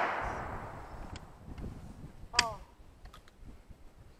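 The rolling echo of a gunshot from a long gun fades away over the first second or so, followed by a few faint clicks.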